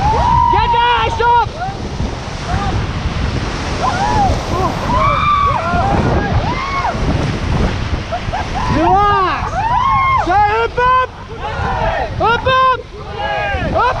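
Rushing whitewater of a rapid around an inflatable raft, with wind buffeting the microphone. Over it, rafters give repeated short, high shouts and whoops, bunched near the start and again in the second half.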